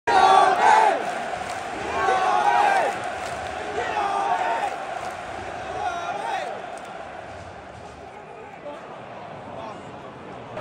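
Large football stadium crowd shouting and calling out, loudest in the first few seconds, then settling into quieter, steady crowd noise in the second half.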